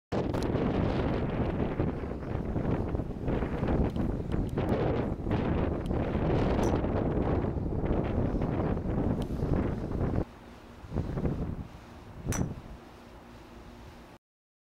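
Wind buffeting the microphone in gusts, dropping to a much lower level about ten seconds in. A single sharp click stands out near the end.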